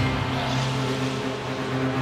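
Race car engine heard from inside the cockpit, holding steady revs with an unchanging note over a rushing noise.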